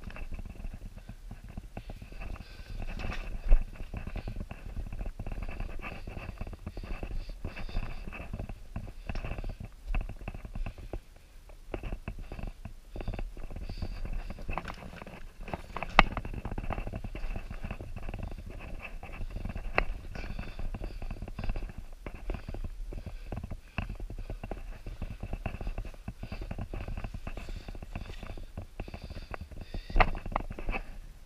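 A caver moving over lava rock: irregular scuffing, scraping and rustling of clothes and gear, with many small clicks. Two sharp knocks stand out, one a few seconds in and one about halfway.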